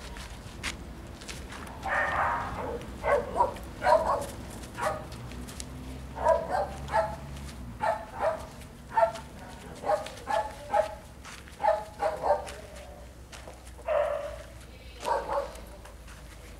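A dog barking repeatedly, about twenty short barks in runs of two or three, with a longer drawn-out call about two seconds in and another near the end.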